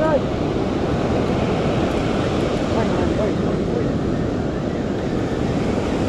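Steady rush of surf breaking on a sandy beach, mixed with wind buffeting the microphone.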